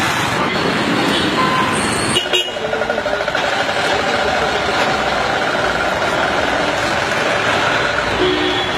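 Road traffic noise with motorbikes and cars going by, including a motor scooter passing close near the start. The sound breaks off sharply about two seconds in and carries on as similar street noise, with faint horn-like tones held in it.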